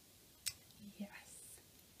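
Quiet speech: a woman's soft, breathy "yes" in a pause, with a sharp click about half a second in.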